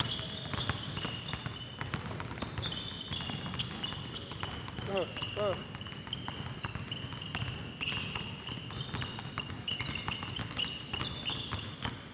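Basketballs dribbled fast on a hardwood gym floor, rapid irregular bounces from more than one ball at once. Sneakers squeak on the floor with the quick footwork.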